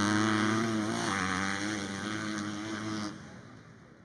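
An engine running at steady, slightly wavering revs, which drops sharply in level about three seconds in and then fades away.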